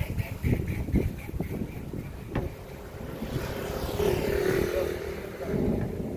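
Knocks and low thumps from a large wooden cabinet being tilted and shifted by hand across grass. About halfway through, a motor vehicle's engine rises and fades as it passes.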